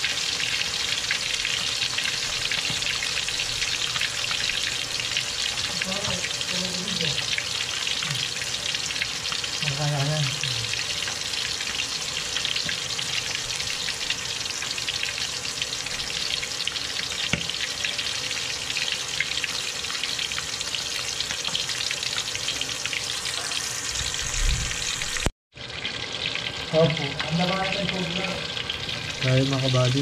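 Tilapia pieces frying in hot oil in an aluminium wok: a steady sizzle that cuts out for an instant near the end.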